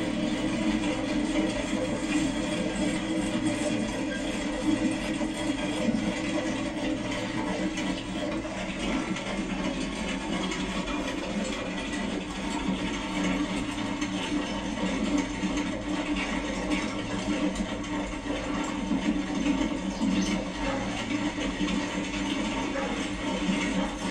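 Soundtrack of a television playing in a room: a steady, dense rushing noise with no speech and no clear rhythm.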